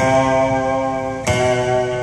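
Solo acoustic guitar: two plucked chords struck about a second apart, each left to ring out and fade.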